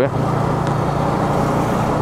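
Yamaha MT-15's single-cylinder engine running steadily as the motorcycle cruises, with road and wind noise.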